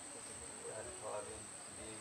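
Steady, high-pitched, unbroken drone of insects, with a faint murmur like distant voices about halfway through.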